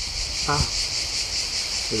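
Cicadas singing in a steady, high, rapidly pulsing chorus.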